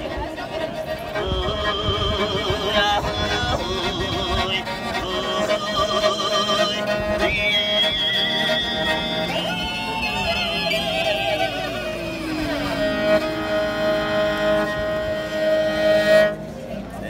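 Morin khuur (Mongolian horsehead fiddle) being bowed: a folk melody with wide vibrato over a steady drone note, with a long downward slide about twelve seconds in.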